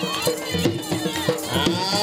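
Punjabi folk music for a horse dance: dhol drumming in a steady beat, with a wavering, held melody line over it.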